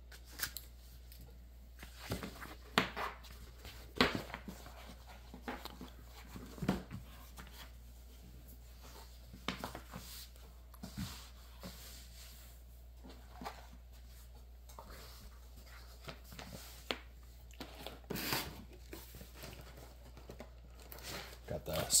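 Handling noises from a rolled cloth-topped playmat being unrolled and smoothed flat on a table: irregular rustles, soft taps and brushing sounds, with a few sharper knocks.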